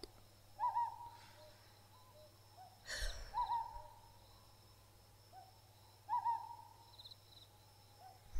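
An owl hooting in a forest ambience: short single hoots repeating about every three seconds, with fainter calls between them. A brief breathy rush of noise comes about three seconds in.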